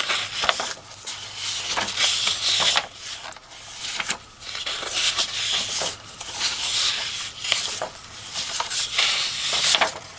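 Sheets of patterned paper being leafed through and slid over one another by hand: repeated rustles and swishes about once a second, with a few light taps.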